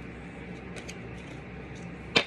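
Quiet room tone: a steady low hum with a couple of faint, light ticks a little under a second in.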